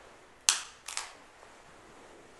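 A communion wafer (the priest's host) snapped in his fingers: one sharp, crisp crack about half a second in, then a quick double crack a moment later.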